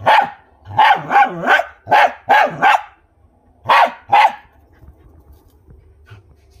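Dog barking at a mongoose: a quick run of about seven sharp barks, then two more after a short pause.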